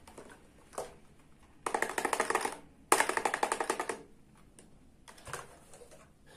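Plastic toy cash register rattling with rapid, evenly spaced clicks in two bursts of about a second each, with a few softer single plastic clicks before and after.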